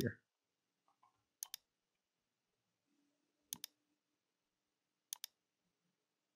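Three pairs of sharp computer mouse clicks, each a button press and release in quick succession, about two seconds apart, against near-silent room tone.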